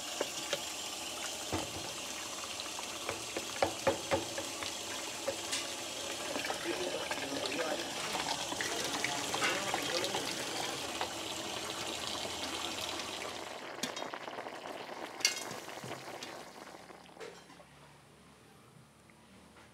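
Tap water running into a plastic pitcher while a metal spoon stirs mashed roasted ripe plantain, with a few sharp knocks of the spoon against the pitcher. The water sound thins out about 14 seconds in, leaving a couple of clicks.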